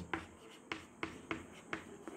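Chalk writing on a chalkboard: about half a dozen short, faint taps and strokes at uneven intervals as letters are written.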